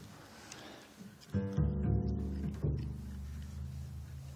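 Double bass strings plucked twice, about a second in and again near three seconds, each low note ringing on: the newly fitted strings being checked for pitch as they are tuned up in fourths.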